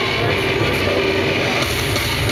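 Loud drum and bass / industrial hardcore music played by a DJ over a club sound system, a dense steady wall of sound with heavy bass.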